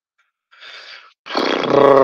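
A man's breathy exhale, then a loud, drawn-out vocal sound held on one pitch for most of a second, running straight into speech.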